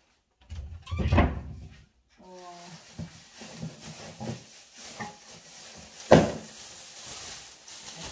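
Kitchen wall-cupboard doors pushed shut with a thud about a second in, then a plastic rubbish bag rustling steadily as it is pulled out of the bin, with one sharp knock past the middle.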